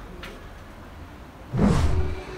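Low background hiss, then about a second and a half in a short rushing whoosh that swells and fades within half a second: an editing transition sound effect.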